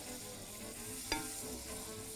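Rice and onion frying in oil and butter in a pot, sizzling quietly while a wooden spoon stirs them, with one short knock about a second in.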